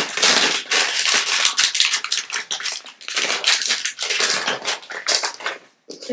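Cat crunching dry treats close to the microphone: dense, irregular crackling and clicking.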